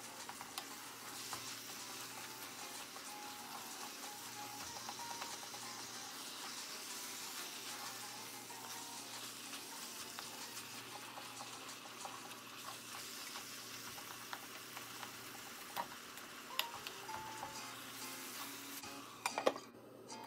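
Minced meat for dullet frying in a pot with a steady faint sizzle, scraped and stirred with a wooden spatula. Near the end there are a few sharp clinks as the pot's glass lid is handled.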